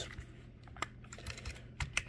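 Small plastic clicks and taps from a toy car-hauler trailer's hinged upper deck being pushed up and fiddled with by hand: a few scattered clicks, one about a second in and two close together near the end.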